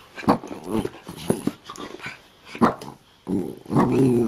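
Small curly-coated dog giving a series of short barks and growls, about five separate bursts, the last near the end the longest.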